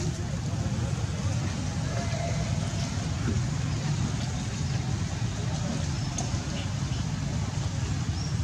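Steady low outdoor background rumble, even in level throughout, with a faint short high squeak about six seconds in.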